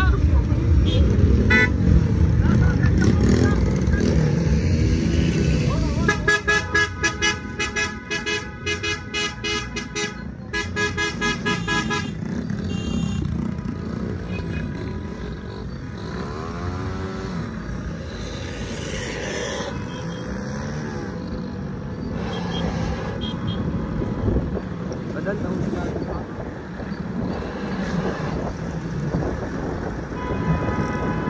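Car horns honking in quick repeated beeps for several seconds, over the running engines of cars and motorcycles in a slow convoy. Later a motor's pitch rises and falls as a vehicle revs or passes.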